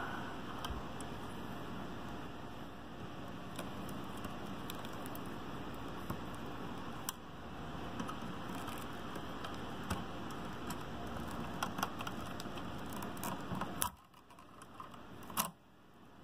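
Small ticks and scrapes of a test-light probe pushing at the melted plastic of a car amplifier's burnt fuse bank, over a steady hiss. The hiss drops out about two seconds before the end, and a sharp click follows.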